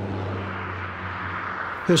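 Steady road noise of highway traffic: the continuous rush of tyres and engines from cars passing on a multi-lane road, with a faint low hum beneath.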